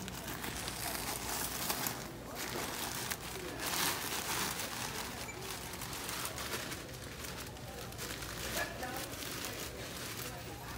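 Large plastic bags of cereal crinkling as they are pulled off a shelf and handled, in irregular rustles, loudest around four seconds in.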